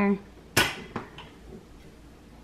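A glass bottle's cap popping off: one sharp pop with a brief hiss about half a second in, then a faint small click.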